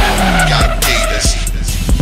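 Hip hop music laid over a sportbike burnout, the rear tyre spinning on the pavement under a running engine.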